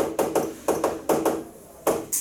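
Chalk tapping and scraping against a chalkboard while writing: a quick run of sharp taps, about five a second, a brief pause, then one more tap near the end.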